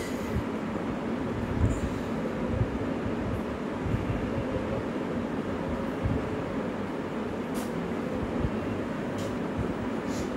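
A steady low background rumble, like a running machine or distant traffic, with a couple of faint clicks in the second half.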